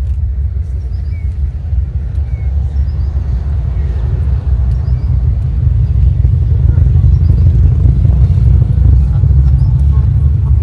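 Wind buffeting the microphone: a loud, low, fluttering rumble that grows stronger about halfway through.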